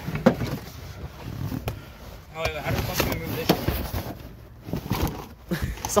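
Integra's floor carpet being pulled up and dragged out of the car: rustling and scraping with scattered knocks as it comes loose, and brief voices about midway.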